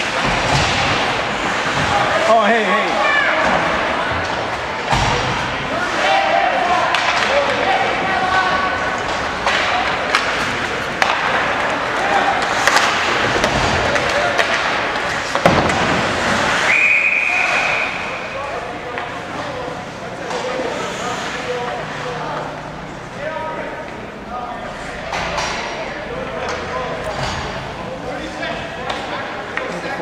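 Ice hockey game in an arena: people talking near the microphone over the sharp knocks and thuds of pucks, sticks and boards. A referee's whistle blows once for about a second, about halfway through.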